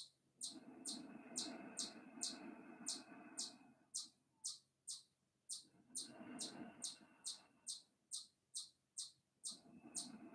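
A bird calling: short high chirps repeated evenly, about two a second, each dropping slightly in pitch. Underneath, a soft rushing noise comes and goes.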